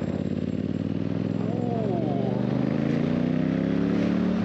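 Yamaha Tracer 7's parallel-twin engine under acceleration, its note rising steadily in pitch as the bike gathers speed, with wind rush over the helmet microphone.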